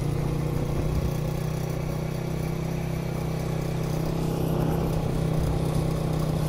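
Honda CG125's single-cylinder four-stroke engine pulling steadily in second gear up a steep climb, an even hum.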